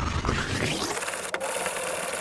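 Finned cylinder head of a Honda Motocompo two-stroke engine being rubbed back and forth on a flat sharpening stone to lap its gasket face flat: a steady gritty scraping, with one sharp click a little past halfway.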